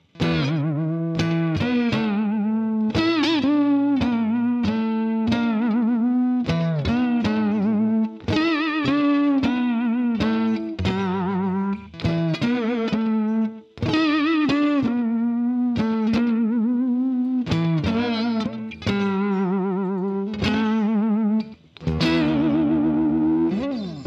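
Harley Benton Stratocaster-style electric guitar playing a line of notes whose pitch wavers up and down throughout, bent with the tremolo arm, with a few short breaks between phrases. The heavy tremolo-arm use knocks the guitar out of tune.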